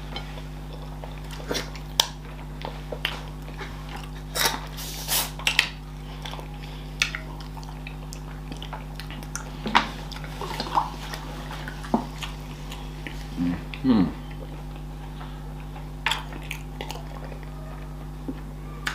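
Close-up mouth sounds of people eating fufu and okra soup with their hands: scattered short wet smacks and clicks of chewing and finger-licking, over a steady low hum. A short hummed 'mm' about fourteen seconds in.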